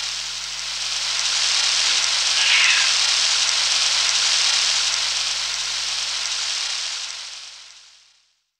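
A steady high-pitched hiss of noise with a low hum beneath it, closing out a recorded song, fading away to silence in the last second.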